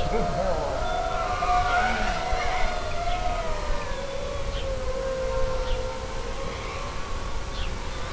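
Mini FPV racing quadcopter's motors and propellers whining steadily, the pitch sliding slowly down and then back up as the throttle changes.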